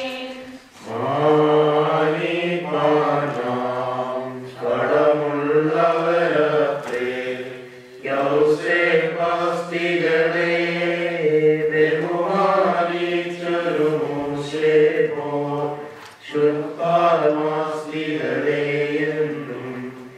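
Voices chanting a West Syriac (Malankara) liturgical hymn in unison, in long held phrases with brief pauses about every eight seconds.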